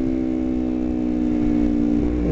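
Kawasaki Ninja 250R's parallel-twin engine running at a steady pitch, cruising in fifth gear at freeway speed.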